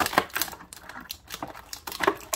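Clear plastic accessory bag crinkling and crackling as it is handled: an irregular run of sharp crackles, densest in the first half second and thinning out after.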